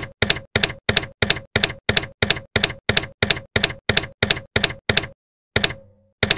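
Typewriter key strikes, evenly about three a second for about five seconds, then a short pause and another strike near the end that leaves a brief low ring.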